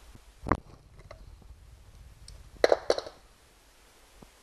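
Small hand-tool handling noises while a screw extractor is worked into a broken screw: one knock about half a second in, then a quick run of three or four sharp clicks near three seconds.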